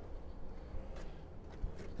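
Quiet outdoor background noise with a steady low rumble, and a faint low thump about one and a half seconds in.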